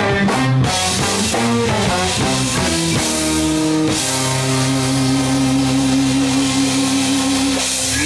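Live jazz-rock ensemble with electric guitar and drum kit playing a fast, angular passage of quickly changing notes, then holding a long sustained chord from about halfway through.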